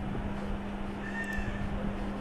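Room and microphone noise with a steady low electrical hum. About a second in there is a brief, faint high-pitched tone lasting around half a second.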